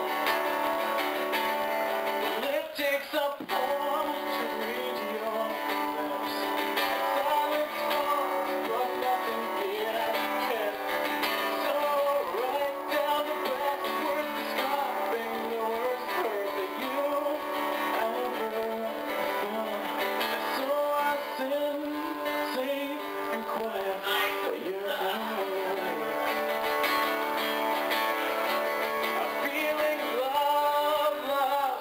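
Acoustic guitar strummed, with a man singing over it.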